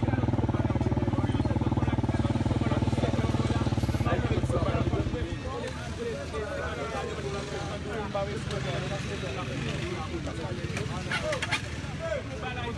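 Motorcycle engine idling close by, a steady low hum that drops away about five seconds in. After that, people's voices chattering in the background.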